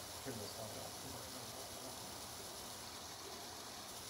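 Steady hiss of room tone, with a few faint spoken syllables in the first second.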